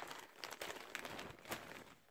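Large zip-top plastic bag full of plastic pacifiers crinkling as a hand rummages through it, a quiet, busy run of small crackles and clicks with a slightly louder one about one and a half seconds in.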